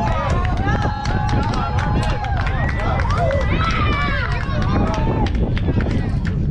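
Several people shouting and yelling, with long drawn-out calls, over a steady wind rumble on the microphone.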